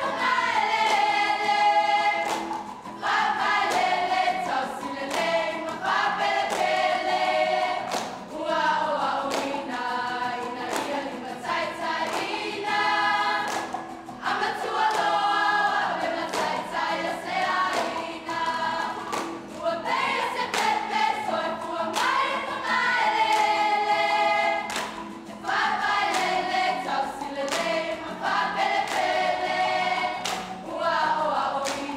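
A group singing a Samoan song in chorus, in phrases a few seconds long, with sharp hand claps running through the singing.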